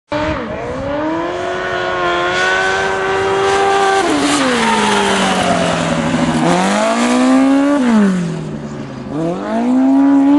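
Formula-style open-wheel race car's engine driven hard on an autocross course: revs held high, a sudden drop about four seconds in, climbing again, falling away around eight seconds and rising again near the end.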